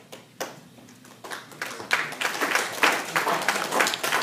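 Audience applause: a couple of single claps at first, building into full, dense clapping from about two seconds in.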